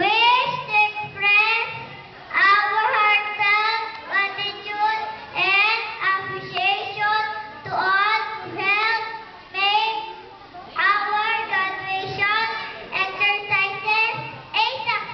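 A young girl singing solo into a microphone, in short melodic phrases with brief pauses between them.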